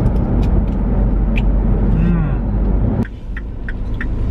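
Road noise inside a moving car's cabin: a steady low rumble of tyres and engine at highway speed, dropping abruptly about three seconds in, with a few small clicks over it.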